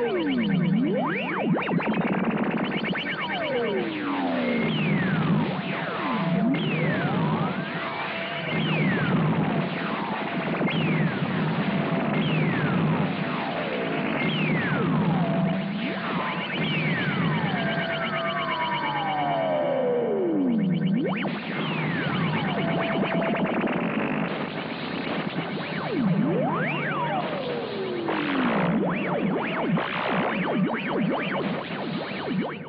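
Synthesized space-battle sound effects: electronic laser-fire sweeps falling in pitch every second or so, with one long slow falling sweep near the middle, over electronic synthesizer music with short repeated beeping tones.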